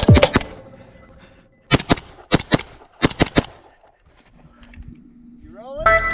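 Handgun shots fired in quick strings: one or two right at the start, then three rapid strings of a few shots each between about two and three and a half seconds in, each shot ringing briefly.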